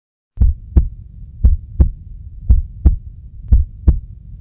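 Heartbeat sound effect: four double thumps (lub-dub), about one a second, over a low hum, starting about half a second in.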